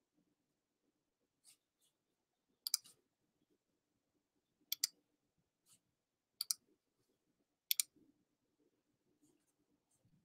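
Computer mouse clicking: four sharp double clicks a second or two apart, with a couple of fainter single clicks before them.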